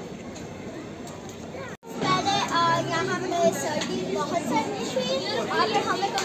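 Steady outdoor crowd and street ambience, then, after an abrupt cut about two seconds in, children chattering and calling out over one another.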